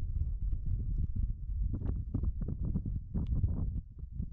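Wind buffeting the microphone as a steady low rumble, with a quick run of short clicks and crunches in the middle and latter part.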